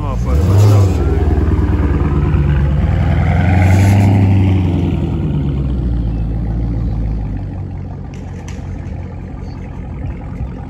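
Dodge Charger Scat Pack's 6.4-litre Hemi V8 with a mid-muffler delete revving as the car pulls away, with a sharp rise about half a second in and a second swell around four seconds. The engine sound then fades as the car drives off.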